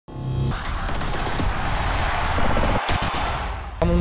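Opening intro sting: a brief chord, then a dense rushing swell of noise for about three seconds. Speech cuts in just before the end.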